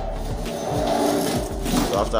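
Plastic LNB holder scraping as it is pushed and slid onto the metal feed arm of a satellite dish, a continuous grinding scrape lasting nearly two seconds.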